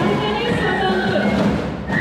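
Marching band drums beating while the band marches, with voices heard over them. The sound drops briefly near the end.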